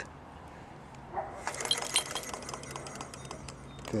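Wood-fired hot-air Stirling engine running under load: rapid, light metallic clicking and clinking from its mechanism for a couple of seconds, over a low steady hum.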